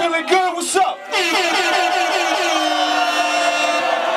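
An air horn sound effect fired by the hip-hop DJ starts suddenly about a second in and holds as one long blast for about three seconds, after a moment of shouting voices.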